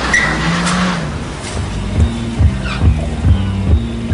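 City street traffic with car engines running. From about two seconds in, a steady low bass beat of music comes in, a little over two beats a second.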